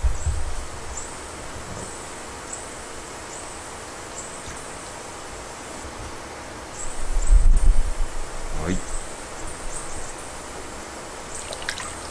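Water sloshing and splashing in a shallow tub as a koi is held and turned by hand, over a steady background hiss, with a louder burst of water noise about seven seconds in.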